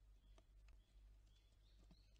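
Near silence, broken by a few faint clicks and taps from an Ezo squirrel feeding in a wooden feeder's seed tray, with faint short high bird notes.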